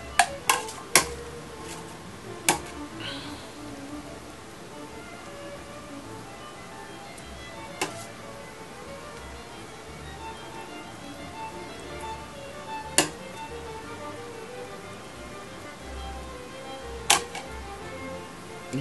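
Soft background music with steady, shifting tones, over a handful of sharp, brief utensil taps at irregular intervals as sauce is spooned into a baking pan.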